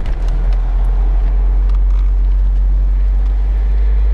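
Open-top roadster driving at a steady speed: a loud, even low rumble of road, wind and engine noise.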